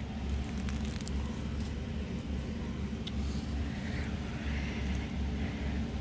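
A steady low background hum, with a few faint clicks.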